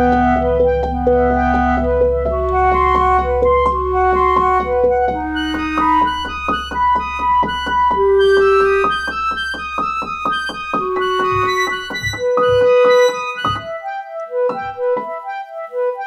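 Piano playing a slow instrumental piece, a repeating figure of single notes over a low held bass. The low bass stops about twelve seconds in, leaving sparser, separated notes.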